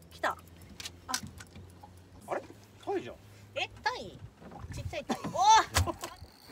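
Several short wordless vocal exclamations, the loudest one near the end, with a few sharp clicks about a second in. Under them a low steady hum stops a little past halfway.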